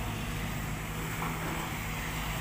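Diesel engine of an amphibious excavator on pontoon tracks running steadily at a low, even pitch while it dredges mud from the river.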